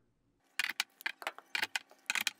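Kobalt 24-volt plastic battery packs being picked up and slid onto a four-port charger: a quick run of plastic clicks and clacks, starting about half a second in, as the packs knock together and latch into the charger bays.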